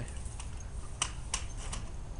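A few short, sharp clicks in the second half, over a low steady rumble.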